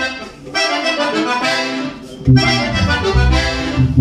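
Accordion playing a melodic phrase, with a bass guitar coming in strongly a little over two seconds in.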